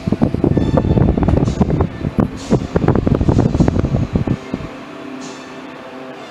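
Loud rumbling and rapid knocking from the microphone being handled and jostled as the camera moves, stopping about four and a half seconds in, with faint background music underneath.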